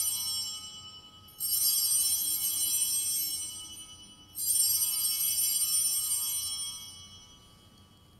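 Altar bells (sanctus bells) rung at the elevation of the host during the consecration. A clustered, high-pitched ringing, with a fresh ring about a second and a half in and another about four and a half seconds in, each fading over a couple of seconds. The last dies away near the end.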